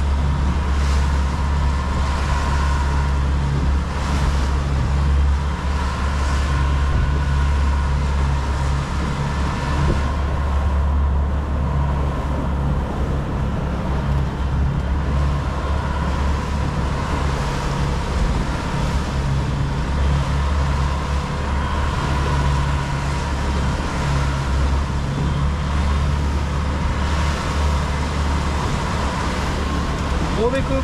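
Outboard motor on a small motorboat running steadily at cruising speed, a constant low drone under the rush of wind and wake.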